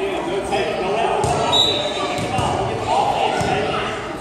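Chatter of voices echoing in a gymnasium, with a basketball bouncing on the hardwood court in the second half. A short high-pitched tone sounds about a second and a half in.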